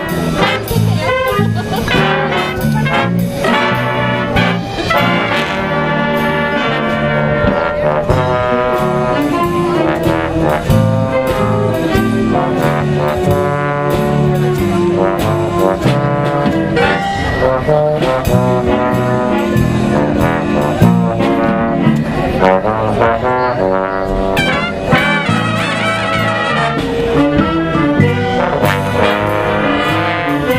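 A school jazz big band of saxophones, trumpets and trombones playing a swing tune live, with a trombone standing out as the solo voice over the band and drums.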